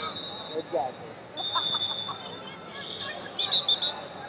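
Wrestling arena ambience with scattered shouts and calls from coaches and spectators, and steady high whistle tones carrying from across the hall. About three and a half seconds in comes a quick run of short whistle blasts: the referee stopping the action.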